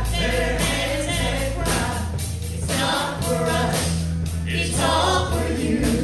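Live gospel praise-and-worship music: several singers on microphones over electric guitar and a drum kit keeping a steady beat.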